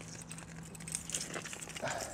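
A magnet on a rope dragged over muddy foreshore gravel, with a scatter of small clicks and clinks as it scrapes stones and picks up bits of iron.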